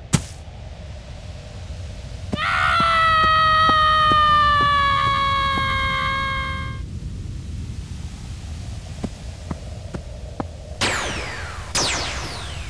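A sharp click, then a long high-pitched scream held for about four seconds, its pitch sagging slightly, over faint regular ticking. Near the end, quick falling zap sounds begin, one about every second.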